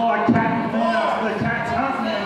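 Voices in a wrestling hall, with two low thuds, the louder about a quarter second in and another about a second and a half in.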